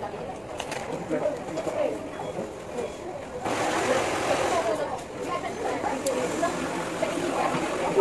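Indistinct chatter of other people talking in a busy fast-food restaurant. A steady hiss of room noise grows a little louder about three and a half seconds in.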